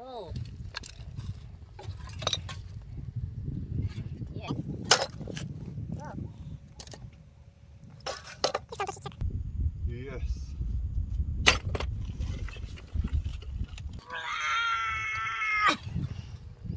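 Scattered knocks and clanks of rusted motorcycle parts and debris being shifted and pulled from a dirt pit, over a low rumble. Near the end a loud, held high-pitched call lasts about two seconds.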